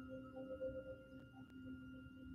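Faint ambient music of a few steady, sustained ringing tones, slowly fading.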